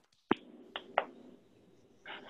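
Three sharp hand claps in the first second, coming over a video-call line that cuts off the highs: scattered applause answering a call for a round of applause.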